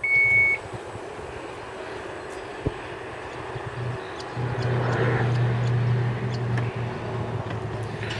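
2014 Dodge Grand Caravan's power liftgate closing: a steady warning beep at the start, then the liftgate motor hums as the gate lowers. The hum grows louder about halfway through and stops shortly before the end.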